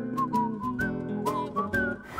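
Background music: a whistled tune over evenly plucked guitar chords.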